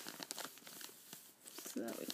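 Clear plastic sample bag crinkling as it is handled, an irregular run of small crackles.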